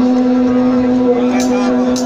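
Live band music heard from within the audience: one long held low note, with two short percussive clicks near the end.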